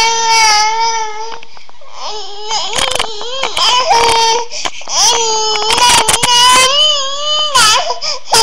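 A young child crying in long, high-pitched wails, three bouts of them with short breaks between.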